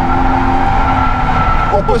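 Subaru BRZ's 2.0-litre flat-four engine held at steady high revs, heard from inside the cabin, with a steady high squeal from the tyres as the car slides sideways in a drift.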